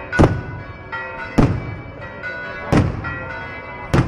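Church bells ringing, with four heavy strokes about a second and a quarter apart and the bell tones ringing on between them.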